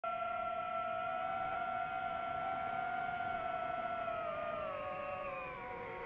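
DJI FPV drone's motors and propellers whining in flight, a steady pitched hum that drops in pitch over the last two seconds as the throttle eases off.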